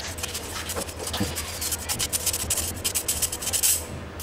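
Metal spoon rubbing and scraping against a stainless-steel mesh sieve, pressing hardened, lumpy powdered sugar through the mesh: a quick, irregular run of short gritty scrapes.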